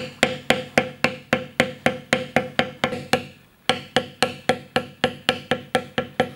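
Mallet striking a metal beveling stamp held on carved leather, a steady run of sharp taps about three to four a second as the beveler is walked along the cut lines, with a short pause a little past halfway.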